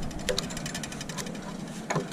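A quick run of light, rapid clicks lasting about a second, from metal clamp hardware being turned by hand on a steam-bending form, then a single sharper click near the end.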